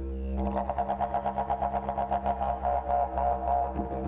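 Didgeridoo playing a steady low drone. From about half a second in, the drone is broken into a quick rhythmic pulse of rising and falling overtones.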